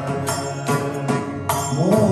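Carnatic devotional bhajan: a male voice singing a namavali with mridangam accompaniment, the drum strokes falling about twice a second. Near the end the voice slides upward in pitch.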